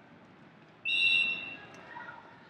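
Wrestling referee's pea whistle, one short blast about a second in, then fading.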